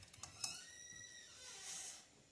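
Cream being poured from a carton into a pot of chicken in sauce, faint, with a light click about half a second in.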